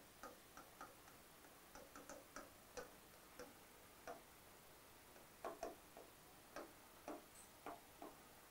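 Faint, irregular taps and short strokes of a pen writing by hand on an interactive display board, a few light ticks a second, over near silence.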